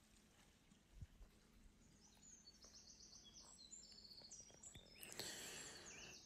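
Near silence: faint outdoor ambience, with a run of faint high chirps from about two seconds in and a soft click about a second in.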